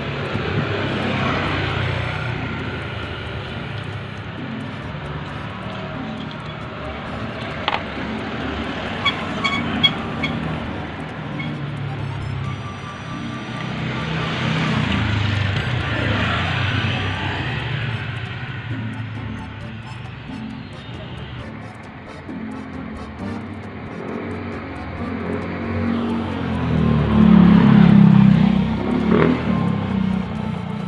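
Motor vehicles passing by, swelling and fading twice, loudest near the end, over background music. A few small sharp clicks come about eight and ten seconds in.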